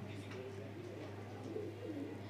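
Faint, low cooing of a bird in the background, over a steady low hum.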